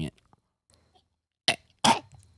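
A man gagging with three fingers pushed down his throat, setting off his gag reflex on purpose. After a silence come two short gags, about a third of a second apart, near the end.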